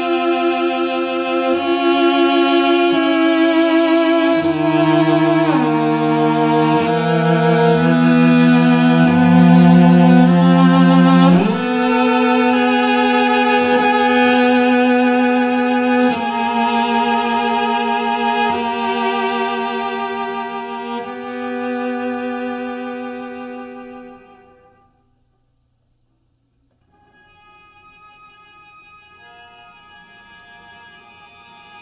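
Two cellos playing a slow, singing duet of long held notes with vibrato. The music fades out about 24 seconds in, and after a couple of seconds of silence the cellos come back in quietly.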